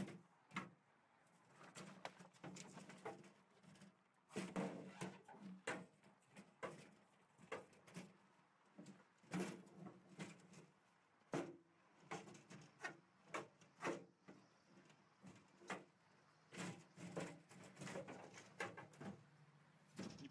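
Metal vending-machine cabinet being wrenched and pried off a brick wall: faint, irregular knocks, clanks and creaks.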